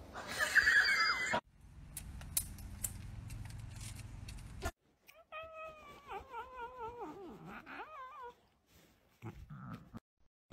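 A tabby cat yowling: one long call of about three seconds, starting about halfway in, its pitch wavering up and down and dipping low near the end.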